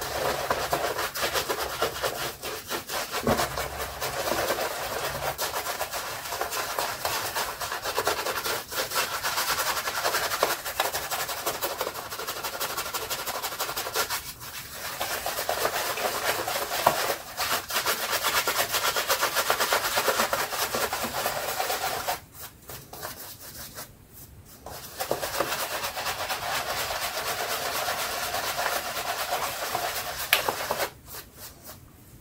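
Shaving brush working shaving-soap lather over a stubbled face: continuous rubbing and swishing of the bristles through the lather. It breaks off briefly partway through, and again for a few seconds about three-quarters of the way through.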